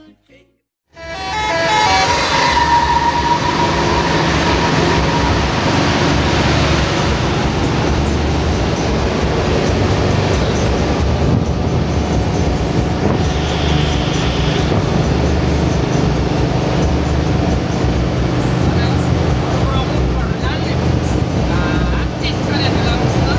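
Inside a moving intercity bus at highway speed, engine and road noise fill the cabin, with music and voices mixed over it. The sound comes in about a second in and stays loud and steady.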